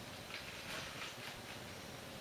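Faint trickle of a water and isopropyl alcohol mix being poured from a plastic jug into a plastic drinks bottle, with a few soft splashy patches in the first second.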